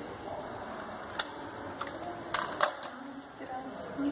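A few sharp plastic clicks from a micropipette being handled and set down on a hard bench: one click just over a second in, then two close together a little past the middle, over a low steady hiss.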